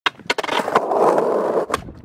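Skateboard sounds: a few sharp clacks of the board, then the wheels rolling on hard pavement for about a second, with another clack near the end.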